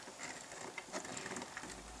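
Faint, scattered light clicks and taps of small plastic toys being handled on a plastic toy cash register.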